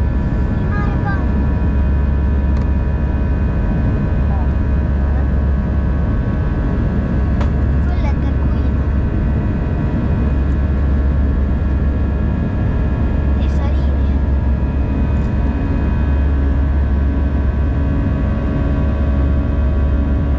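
Airbus A319 cabin noise while climbing out: a steady, loud low rumble of the jet engines and airflow, with several steady whining tones over it.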